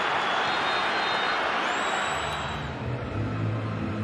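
Stadium crowd noise, a steady loud roar. It fades out about two and a half seconds in and gives way to a low pulsing rumble.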